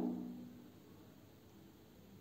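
Near silence: faint room tone with a few faint low hums, after the tail of the preceding sound dies away in the first half second.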